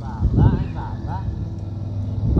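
Motorcycle engine running steadily while riding, a low hum that carries on under a short stretch of talking in the first second.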